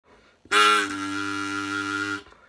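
Party blower (paper blowout with a reed mouthpiece) blown in one long buzzing honk, starting about half a second in with a loud burst and then holding steady.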